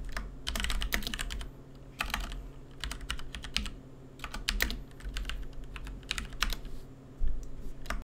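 Typing on a computer keyboard: irregular runs of key clicks with short pauses, over a faint steady low hum.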